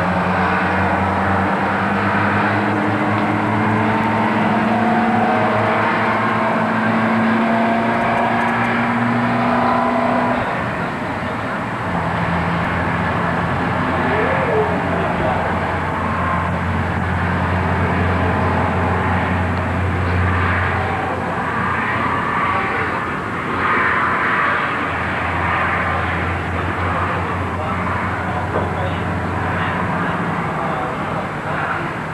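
Traffic on the streets below: vehicle engines running steadily, one engine note slowly rising over the first ten seconds, then a deeper steady engine hum through the middle and again near the end.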